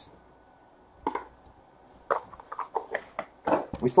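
Light taps and knocks of cardboard trading-card boxes being handled and set down on a table, a few scattered ones in the second half.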